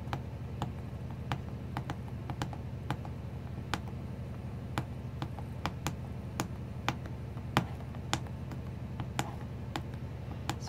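Paper piercer punching holes one after another through cardstock under a plastic piercing guide into a piercing mat: a string of small, sharp ticks at an uneven pace of about two or three a second, over a steady low hum.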